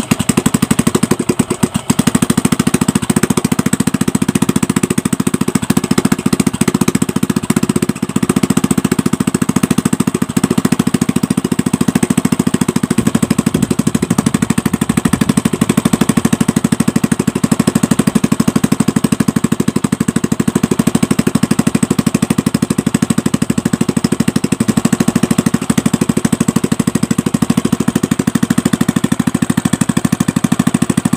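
Honda Karisma 125's single-cylinder four-stroke engine starting up and running at a steady idle with an even, fast beat. This is its first test run after the cylinder block and rings were replaced to cure oil smoke caused by stuck oil rings.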